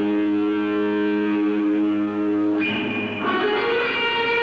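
Live rock band recording: a guitar chord held and ringing, changing to a new chord about two and a half seconds in and again shortly after.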